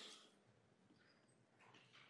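Near silence: room tone, with the tail of a spoken word fading out at the very start.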